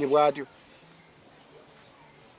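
Insects chirping: a thin, high trill that comes and goes in short pulses, heard once a voice stops about half a second in.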